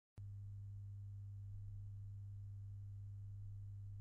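Steady low electrical hum from the record-playing setup, with no music yet: the stylus is not yet in the groove.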